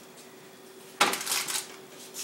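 Something being put back into an open refrigerator, with a short clatter of containers knocking against the shelf about a second in.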